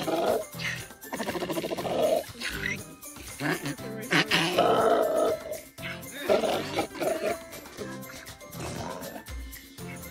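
A donkey braying in several long calls over background music.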